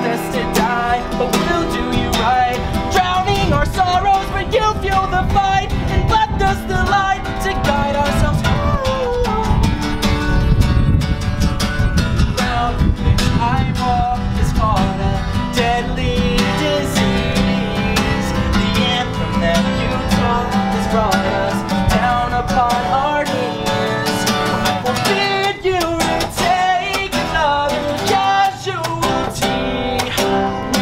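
Live acoustic song: acoustic guitar strummed steadily, with a man singing over it.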